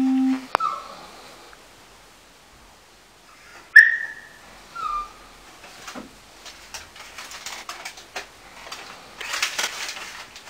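A steady low tone cuts off half a second in; then three short falling squeaks, the loudest about four seconds in, followed by light clicks, knocks and rustling of objects being handled on a desk.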